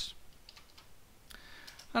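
A few faint keystrokes on a computer keyboard as a short command option is typed.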